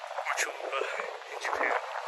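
Indistinct voices with no clear words, sounding thin and tinny over a steady hiss.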